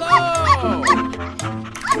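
Husky giving a few short, high yips that rise and fall in pitch, over background children's music.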